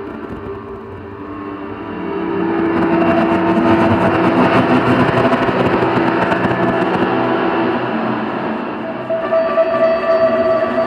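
Free-improvised ambient music from electronics, guitar and double bass: a dense sustained drone of held tones that swells up about two seconds in and eases slightly near the end.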